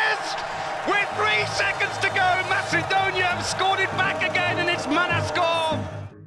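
Excited shouting voices, as of a sports commentator calling a goal, over background music with a low steady drone that comes in about a second in.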